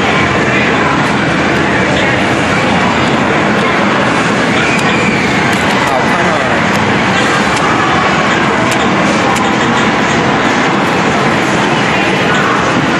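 Loud, steady arcade din: many voices talking at once over the noise of the game machines.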